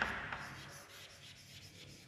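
Chalk scratching on a blackboard as a word is written, fading to faint about a second in.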